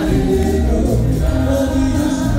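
Gospel music in a church: many voices singing together over an amplified accompaniment with a heavy, steady bass.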